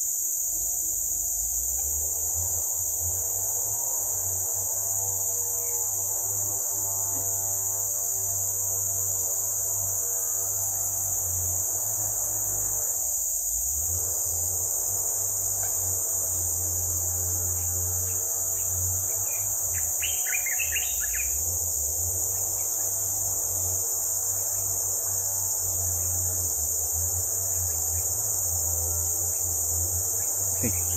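Steady high-pitched chorus of forest insects, with a low hum and a wavering lower drone beneath it and a few short bird chirps about twenty seconds in.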